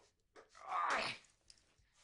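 A single short, breathy vocal burst from a person, rising about half a second in and dying away within about a second.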